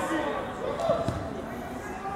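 Players and coaches shouting across an open football pitch, with a single thud of the football being kicked or bouncing about a second in.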